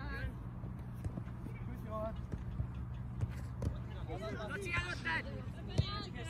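Shouts and calls from players on a football pitch, heard at a distance, with a burst of several voices about two-thirds of the way through, over a steady low rumble.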